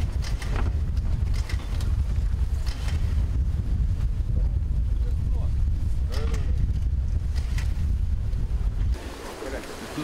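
Wind buffeting the microphone outdoors, a steady low rumble that drops away sharply about nine seconds in, with faint voices of a crowd underneath.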